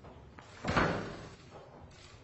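A single thud, like a slam, about two-thirds of a second in, fading away over about half a second.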